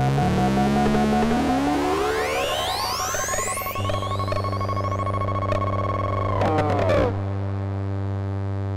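Electronic music outro: a synthesizer sweep rises steeply in pitch over the first few seconds, then gives way to a steady low drone under a held tone. The held tone bends downward near the end.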